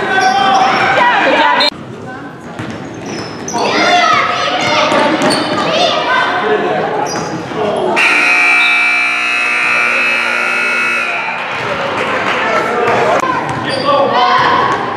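Gym scoreboard buzzer sounding one steady electric tone for about three and a half seconds, starting about eight seconds in. Before it come voices and basketball bounces on the hardwood floor, echoing in the large gym.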